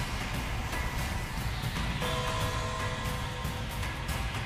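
Anime episode soundtrack playing: a dense, steady wash of battle sound effects and low rumble under music, with held tones coming in about halfway through.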